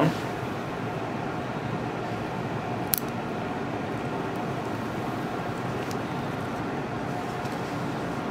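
Steady room background noise, an even hum and hiss like a fan or air conditioning, with one sharp click about three seconds in.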